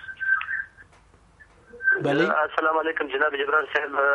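A person speaking over a narrow, thin-sounding line like a telephone connection. A brief snatch of voice comes at the start, then a near pause, then continuous talk from about two seconds in.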